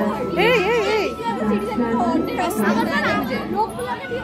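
Crowd chatter: many people talking over one another, children's voices among them, with a thin steady high tone underneath.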